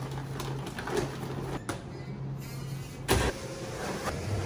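Steady low hum of a spiral dough mixer's electric motor, with the rustle of flour being poured from a paper sack into the bowl. A single sharp knock comes about three seconds in.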